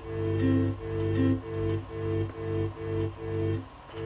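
Akai S2000 sampler playing a looping pattern of sampled notes, a bass under higher notes, about three notes a second, dropping away briefly just before the end. Its sound changes little as key group 2's envelope template is switched.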